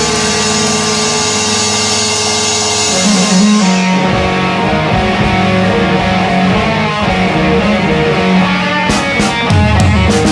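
Punk rock band playing: electric guitar, bass and drum kit. About three seconds in, the cymbals and low end drop back and a guitar riff carries the music. The full band crashes back in with drum hits near the end.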